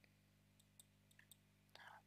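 Near silence: room tone with a faint steady low hum and a few tiny scattered clicks.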